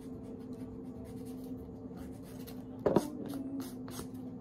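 Light scratching strokes of a nail polish brush drawn across long fingernails, over a steady low hum. A brief louder knock comes a little under three seconds in.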